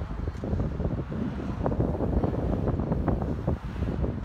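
Wind buffeting the recording phone's microphone: a loud, uneven low noise with no words over it.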